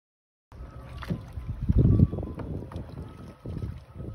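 Wind buffeting a phone microphone out on the water, with irregular splashing and knocking from kayaks being paddled. It cuts in about half a second in after silence.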